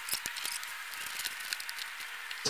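Hand wire snips cutting through chicken-wire mesh: a scatter of small sharp clicks over a faint steady hiss.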